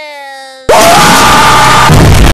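A voice holds a long, drawn-out "yes" on one steady pitch. About two-thirds of a second in it is cut off by a sudden, extremely loud, heavily distorted blast of noise that stays at full level.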